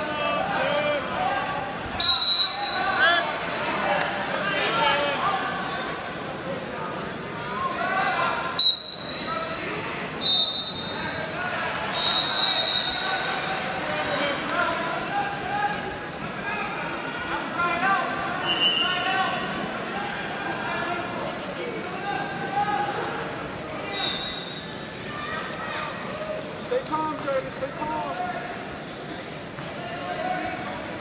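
Voices of spectators and coaches echoing in a large gymnasium, with several short, shrill referee's whistle blasts; the first two are the loudest.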